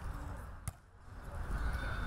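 A single sharp smack of a volleyball being struck by a player's hands or forearms, about two-thirds of a second in, over faint outdoor background noise with a low rumble.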